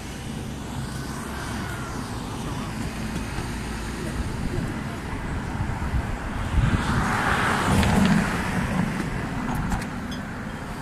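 Street traffic noise, with a vehicle passing close by; its rush swells about seven seconds in and then fades.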